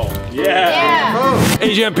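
Drawn-out vocal exclamations with a wavering, bending pitch, after the background music cuts out at the start; a man begins speaking near the end.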